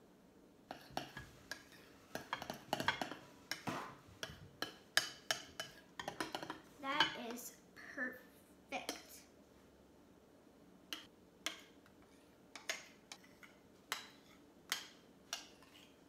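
Metal spoon clinking and scraping against a small ceramic bowl while stirring food colouring into cake batter: a quick, irregular run of light clinks.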